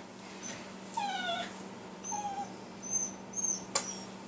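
Faint, high whimpering: one falling whine about a second in and a shorter one about two seconds in, with a few very high short squeaks and a sharp click near the end.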